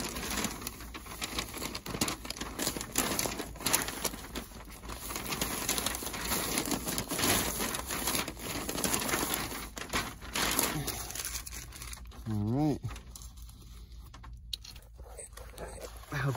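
Black seam tape pulled off the roll and pressed onto crinkling Tyvek house wrap: a dense run of crackly rustling and tearing for about ten seconds, then quieter. A brief vocal sound comes after the rustling dies down.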